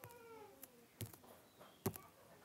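A faint, short pitched call that falls in pitch, followed by a few soft clicks.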